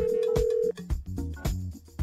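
An electronic telephone ring, a steady tone that cuts off less than a second in, over background music with a beat.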